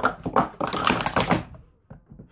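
Plastic sport-stacking cups clattering as they are rapidly stacked and unstacked on a mat: a quick, dense run of clicks and taps that dies away after about a second and a half.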